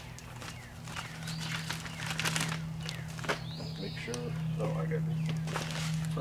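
A bag of granular insecticide being handled and opened, with scattered crinkles and rustles, over a steady low hum that starts about a second in.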